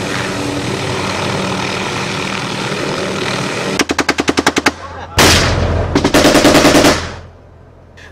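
A light military helicopter runs steadily with a droning hum. About four seconds in, machine-gun fire breaks in: a rapid burst, one heavy shot or blast, then a second rapid burst that stops about a second before the end.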